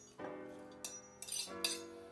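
A metal fork scraping and clinking against a plate as shredded cabbage is pushed off into a glass bowl: a few short clinks, the loudest about one and a half seconds in, over background music.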